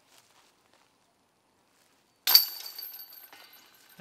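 Disc golf putt striking the basket's hanging chains: after two seconds of quiet, a sudden metallic jingle about two seconds in that rings out and fades over about a second and a half. The putt drops for par.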